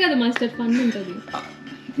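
A few light clinks of cutlery against a plate, with a man's voice laughing and talking briefly at the start.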